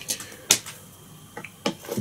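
A few light clicks and taps of small fly-tying tools and materials being handled, the sharpest about half a second in.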